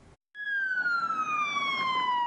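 Police car siren sounding one long wail that falls slowly in pitch, starting about a third of a second in.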